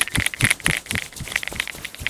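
Quiet, irregular rubbing and crackling clicks, several a second, with no clear whistled tone.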